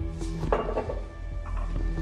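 A drinking glass set down on a wooden bar counter, a sharp clink about half a second in with a short ring, followed by a few light taps of glassware, over a low sustained music score.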